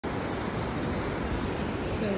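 Steady rushing noise of breaking surf and wind.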